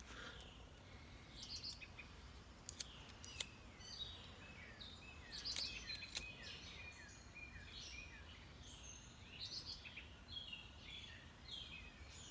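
Songbirds chirping faintly, with many short downward-sliding chirps repeating throughout, and a few sharp clicks scattered through the first half.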